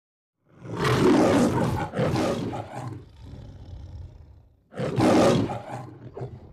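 The Metro-Goldwyn-Mayer logo's lion roar: a loud roar starting about half a second in, in two pulls, trailing off into a quieter growl, then a second loud roar near the end.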